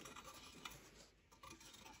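Near silence, with faint rubbing and a couple of light ticks from a folded card-holder tray being handled.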